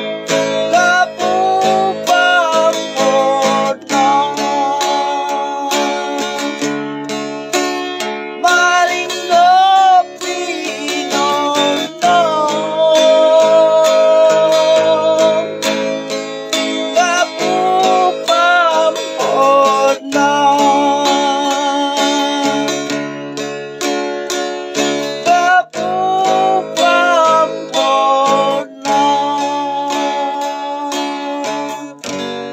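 Acoustic guitar strummed steadily while a man sings over it, in Ifugao.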